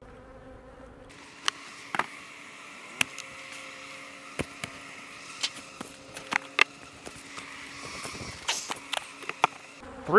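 Honey bees buzzing around opened hives in a steady hum, with scattered sharp knocks and clicks as wooden hive boxes are handled during the honey harvest.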